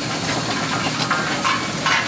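Aveling-Barford 'Advance' steam roller under steam, moving slowly, with a steady hiss of steam and a few soft chuffs.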